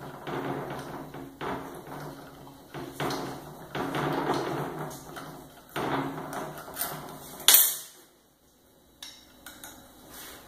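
A hand tool scraping and clinking against the metal of a Holset VGT turbocharger while its electronic actuator is being unfastened for removal, in uneven bursts. A sharp, loud click comes about three-quarters of the way through, then a brief pause and a few small clicks.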